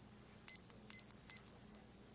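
Three short, high electronic beeps about 0.4 s apart, typical of a digital timer's buttons being pressed to set the three-minute speech time.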